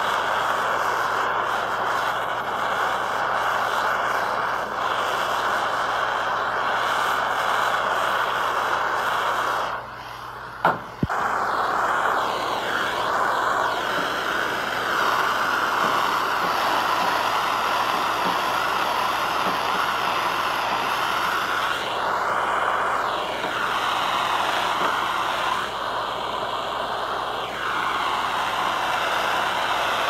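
Gas torch flame running with a steady hiss as it heats body lead on a steel panel. About ten seconds in the hiss dips for a second, with two sharp clicks.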